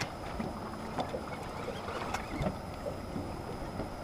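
Steady low noise of a small boat on open water, with wind on the microphone and a few faint clicks.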